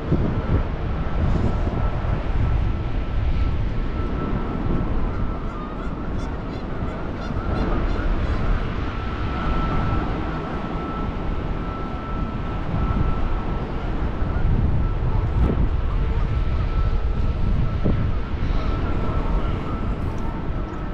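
Wind buffeting the microphone of a camera carried outdoors while walking, a steady rumble throughout, with a thin steady high-pitched tone running under it.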